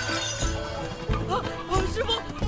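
A glazed ceramic dish smashing on the floor, a sharp crash with shards scattering, right at the start, over background music.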